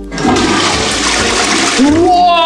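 Toilet flushing from a wall-mounted push-button flush plate: water rushes loudly into the bowl starting just after the button is pressed.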